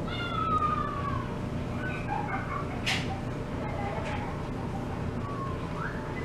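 A cat meowing: one long call with a slowly falling pitch at the start, then a few fainter, shorter calls.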